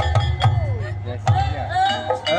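Live Javanese ensemble music accompanying an ebeg (kuda lumping) dance: repeated hand-drum strokes and steady pitched instrument tones, with a voice singing or calling over them.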